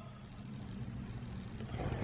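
Quiet steady low rumble of room tone, with a few faint knocks near the end.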